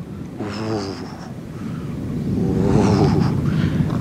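Low rumble from the erupting La Palma volcano, coming in surges every few seconds. Here it swells steadily louder through the second half. A man sighs near the start.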